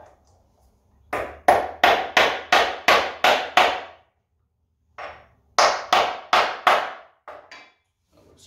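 Hammer driving a steel roll pin into a metal shim resting on a wooden block. A run of about nine sharp strikes, roughly three a second, each ringing briefly, then a pause of about a second and another run of about eight strikes.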